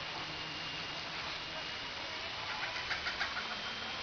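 Steady outdoor background noise with a faint high whine. A quick run of short high chirps comes between about two and a half and three and a half seconds in.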